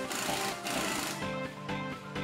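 Impact wrench running on the threaded rod of a coil-spring compressor, compressing the strut's factory coil spring, and stopping a little over a second in. Background music plays throughout.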